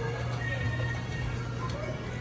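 Ride interior ambience: a steady low hum with faint music and murmuring voices over it.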